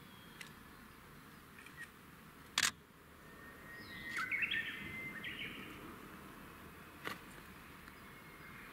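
Birds chirping and calling in woodland, busiest about four to five seconds in, over a faint background hush. A single sharp click about two and a half seconds in is the loudest sound, with a few fainter ticks around it.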